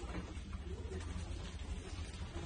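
Faint, low-pitched bird calls repeating a few times over a steady low hum.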